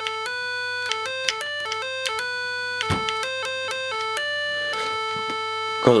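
Simple electronic tones from an FPGA-built FM transmitter, heard through a portable FM radio's speaker: a quick run of short buzzy notes at a few pitches, changing several times a second as the board's buttons are pressed, ending on a longer held note. A faint low hum sits under the notes.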